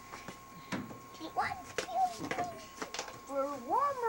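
Several knocks and bumps of a child clambering into the metal drum of a clothes dryer, with short vocal sounds in between and a rising vocal sound near the end.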